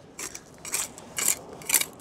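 A small hand trowel scraping and turning over gritty sand and pebbles on a river foreshore, about four short scrapes roughly half a second apart.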